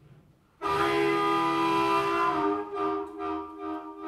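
Blues harmonica amplified through a cupped handheld microphone, playing a train imitation: after a brief pause, a loud held chord like a train whistle sounds for under two seconds, then breaks into shorter pulsing chords.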